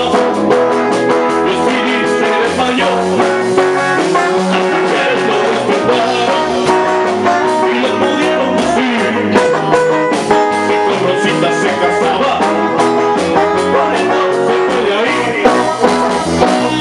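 Live rock and roll band playing: electric guitars and bass guitar over a steady beat.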